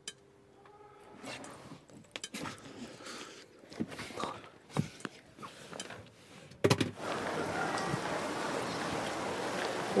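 Faint scattered knocks and rustles, then a sharp knock about seven seconds in, after which steady rain falls.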